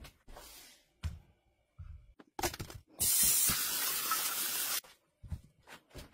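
Water spraying in a steady hiss for almost two seconds, starting about halfway through and stopping abruptly, as apples are rinsed in a metal colander. A few short knocks come before and after it.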